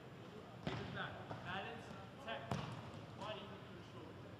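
Two sharp thuds of a soccer ball being struck, about two seconds apart.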